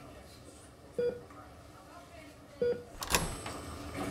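Bedside patient monitor beeping with the heartbeat: two short mid-pitched beeps about a second and a half apart, then a sharp knock near the end.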